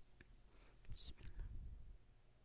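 Faint whispered or breathy sound close to the microphone: a short hiss about halfway through, with low muffled bumps around it.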